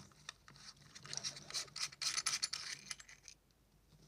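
Metal front bezel of an LED head torch's lamp being unscrewed by hand: faint scratching and rubbing of the threads with a few light clicks, dying away a little after three seconds in.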